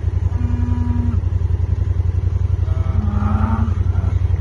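A small engine running steadily, a low rumble with a fast even pulse. Cattle low twice over it, once about a second in and once near the end.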